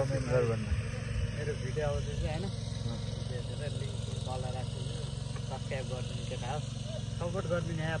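Men talking, over a steady low rumble.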